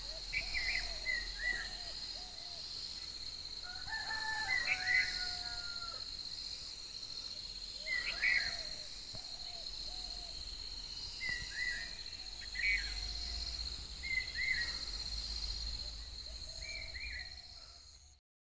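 Roosters and other birds calling: short calls every second or two, with one longer drawn-out crow about four seconds in, over a steady high-pitched hum. It fades out at the end.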